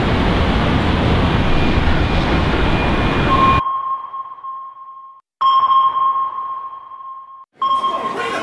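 A loud rushing noise cuts off suddenly about three and a half seconds in, leaving a ringing electronic sonar-like ping. The ping sounds again twice, each time fading away.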